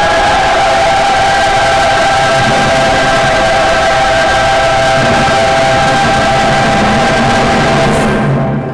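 Music ending on a long chord held steady, under a dense, even wash of crowd applause.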